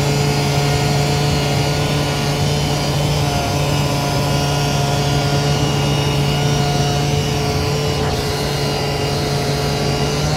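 SurfPrep 3x4 rectangular-pad sander with a foam-backed abrasive, held by a cobot arm, running steadily as it sands an MDF cabinet door panel in circular passes. It makes an even, unchanging hum.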